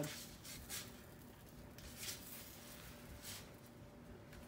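Faint kitchen handling sounds: a few soft scrapes and taps of a spatula and a plastic mixing bowl as pancake batter is scooped and poured, over a faint steady hum.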